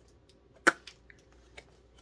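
A single sharp click a little over half a second in, followed by a few faint ticks, from handling a skein of yarn while searching its label.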